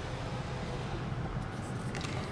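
Power panoramic sunroof of a 2015 Buick LaCrosse opening, its motor running with a faint steady hum that stops about a second in, over a low rumble.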